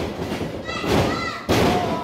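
Heavy thuds of wrestlers' bodies hitting the ring mat, the sharpest about one and a half seconds in as a wrestler is taken down flat onto the canvas, with a voice shouting in between.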